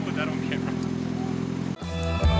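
Rally car engine idling steadily. Near the end it cuts off abruptly and rock music with electric guitar begins.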